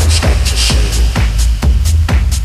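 Techno music: a pounding kick drum about twice a second over a heavy bass line, with hi-hats on top.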